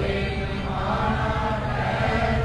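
Quiet devotional chant music between sung lines of a Gurbani refrain: a steady held tone without clear words.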